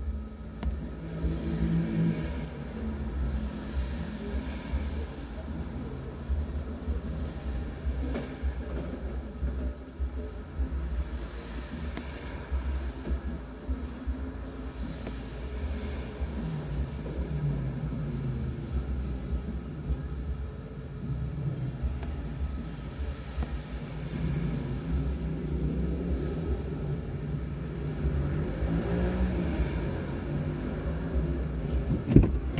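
A car engine idling, heard as a low, uneven rumble inside the stopped car's cabin.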